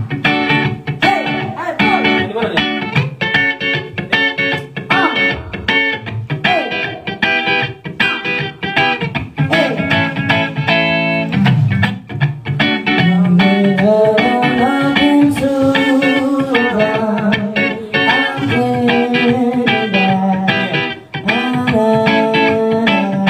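Live guitar accompaniment with picked notes and pitch bends, with a woman singing along into a microphone.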